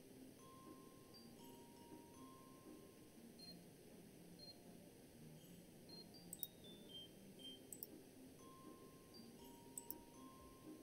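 Near silence, with faint tones at shifting pitches like quiet music and a few soft mouse clicks in the second half.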